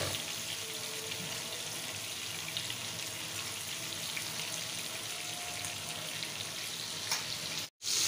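Turmeric-coated hilsa fish pieces frying in hot oil in a kadai: a steady sizzle with fine crackling. The sound breaks off suddenly for a moment near the end.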